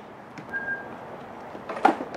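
A single sharp knock near the end over a faint steady background hiss, with a brief thin high tone about half a second in.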